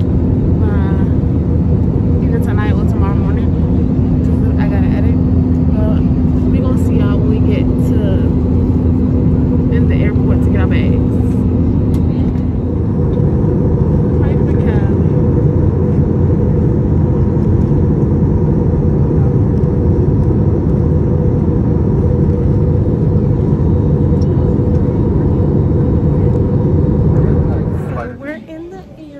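Jet airliner cabin noise in flight: a loud, steady roar of engines and rushing air with a low hum. The roar changes character about halfway through.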